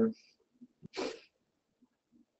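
A man's voice trails off, then about a second later a single short burst of breath-like noise comes from a person at a microphone, lasting about a third of a second.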